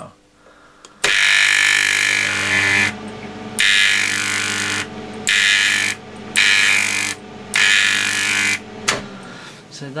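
High-voltage electric arc from an 8 kV, 375 mA neon sign transformer, struck six times in loud bursts of about half a second to two seconds each, with a steady mains hum under each burst. The transformer's magnetic shunts are fully in, its lowest power setting.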